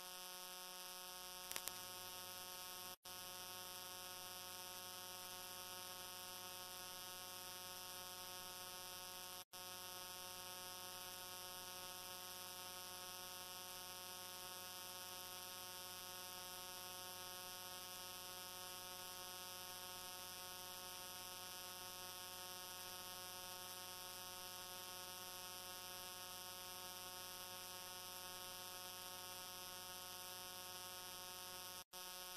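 Faint, steady electrical mains hum with many overtones, unchanging throughout, broken by two very brief dropouts about three and nine and a half seconds in.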